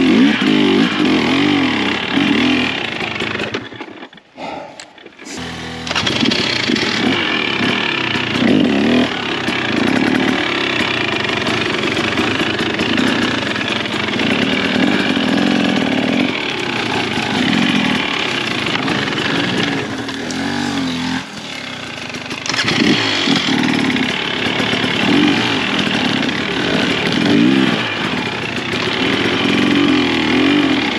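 KTM XC 300 TBI single-cylinder two-stroke dirt bike engine blipping and revving up and down at low speed through tight woods. The sound briefly drops away about four seconds in.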